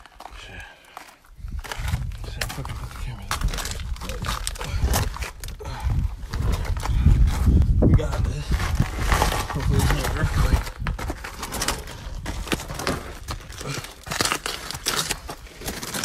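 Clothing and a backpack scraping and rustling against rock walls while squeezing through a narrow crevice, with heavy handling rumble on a phone microphone and some muttered talk.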